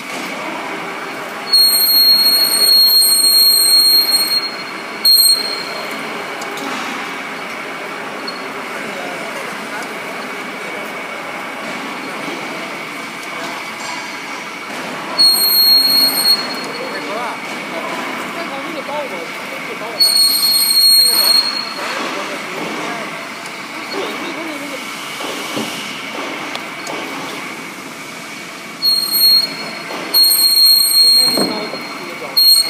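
SKD-600 electric pipe cutting and beveling machine running on a steel pipe, its rotating ring carrying the cutting tools around, with a steady high whine. Several times the cutting tool gives a loud, shrill metal-on-metal squeal lasting a second or two: about two seconds in, around fifteen and twenty seconds, and just before the end.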